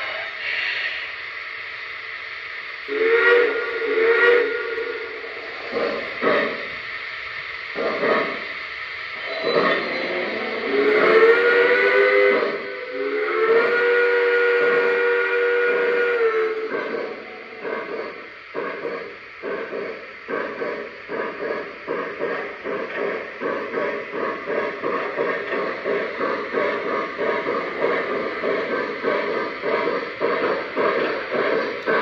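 Electronic steam-whistle sound from the onboard sound systems of Lionel model Pennsylvania steam locomotives: two short toots, a few brief ones, then two long blasts whose chord sags slightly as each ends. After that comes steady rhythmic chuffing, about two chuffs a second.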